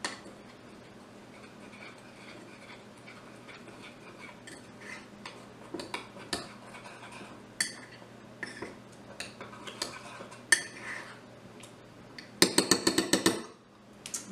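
A metal spoon stirring cereal mix and cold water in a ceramic mug, with faint scattered clinks and scrapes. About twelve and a half seconds in comes a quick run of loud clinks, lasting about a second, as the spoon is knocked against the mug.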